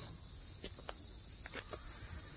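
A steady, high-pitched insect chorus drones without a break, with faint scattered ticks of footsteps on a rocky dirt trail.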